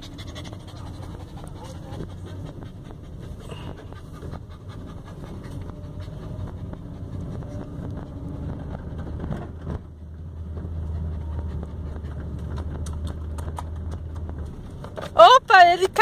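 A dog panting right at the microphone inside a moving car, over the steady low rumble of the engine and road. A woman starts speaking near the end.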